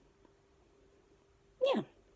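Near silence with a faint steady hum, then a woman says a single drawn-out 'yeah' with a falling pitch near the end.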